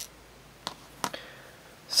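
Two light metallic clicks, about half a second apart, as a steel anchoring screw is handled against the stainless steel window handle's base; the second click rings briefly.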